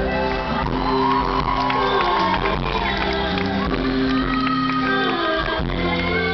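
Live pop-rock band playing on stage (guitars, keyboard and drums), with a voice held over the music.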